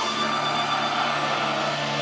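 Live pagan metal band sounding a sustained, droning chord: steady held tones over a wash of distorted noise, the strumming having stopped.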